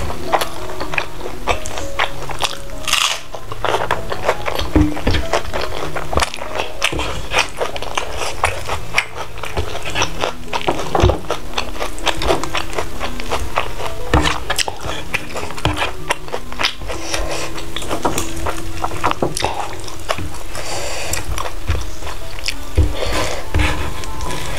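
Close-miked chewing and crunching of salted egg chicken and rice, with many short crisp bites and mouth sounds, over background music.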